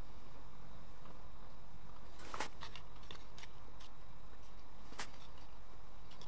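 Short clicks and scrapes of a plastic spoon against a plastic bowl as fish is eaten, a scatter of them starting about two seconds in, over steady background noise.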